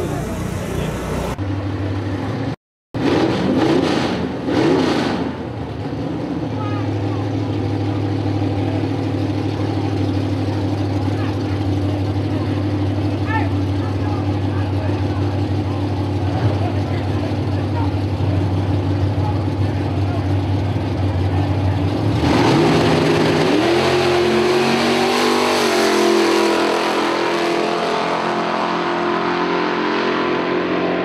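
Drag-racing car engines running steadily at the starting line, then about two-thirds of the way through they rev hard as the cars launch and accelerate down the strip, the pitch climbing through the gears.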